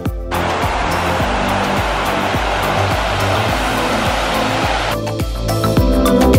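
Background music with a steady beat, overlaid for most of its length by an even, high hiss that starts and stops abruptly.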